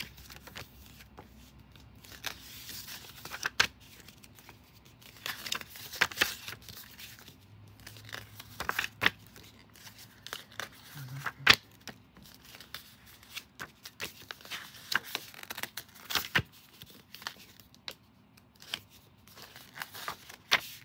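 Paper CD booklet being handled and its pages turned, making irregular rustles and sharp crisp flicks.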